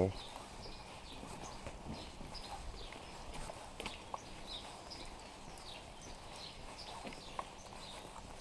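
Footsteps walking on a wet paved lane, with small birds chirping repeatedly in the background.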